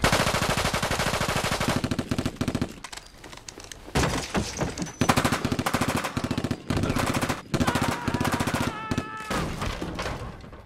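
Automatic gunfire in a film soundtrack: a long burst of rapid shots lasting about two seconds, then after a pause several shorter bursts with gaps between them.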